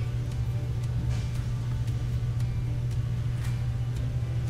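A steady low hum throughout, with a few faint light clicks of small beads being slid onto beading wire, about a second in and again past three seconds.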